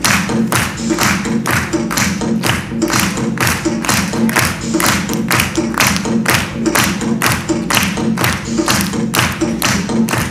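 Music with a fast, steady beat, about three sharp beats a second over a sustained melody.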